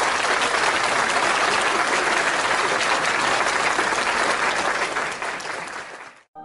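Applause from a crowd: dense, steady clapping that fades out at the end.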